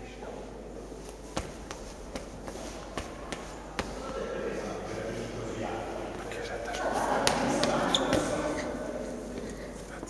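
Scattered footsteps and knocks on a hard floor over the murmur of many people talking in a large, echoing hall; the chatter grows louder in the second half.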